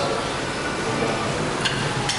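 Steady background room noise of a gym, with a short click or clink about one and a half seconds in.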